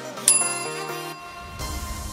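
A single bell chime from an interval timer rings out sharply and dies away over about a second, marking the end of a work interval. Background music runs under it, with the dance beat gone and a calmer track starting near the middle.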